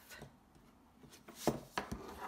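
Card stock being folded in half and pressed flat by hand on a craft mat: nearly silent at first, then a few light taps and a soft rustle of paper and tool handling in the second half.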